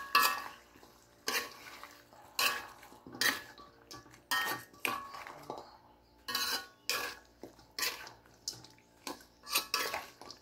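A metal spatula clanking and scraping against a black wok while stirring fried chicken feet, in irregular strikes about once a second, several ringing briefly.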